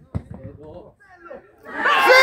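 A football kicked with a single sharp thud just after the start, among scattered voices of people at the pitch. Near the end a loud, long, steady shout rises in.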